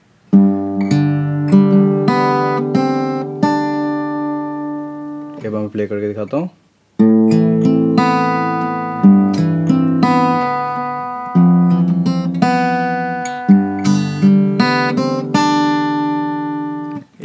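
Steel-string acoustic guitar fingerpicked, notes ringing into each other as it arpeggiates A minor, A minor with G in the bass, and F. It plays a phrase of about five seconds, breaks off briefly, then plays a longer phrase from about seven seconds in.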